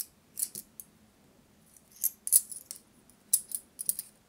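Light metallic clinking: a few short, high-pitched clinks and jingles spread over the seconds, with quiet between them.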